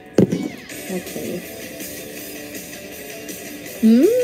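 Soft background music with guitar playing under the livestream, with a sharp knock shortly after the start.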